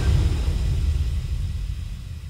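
A low bass rumble from the song's backing track, left ringing in a break in the music and fading away slowly.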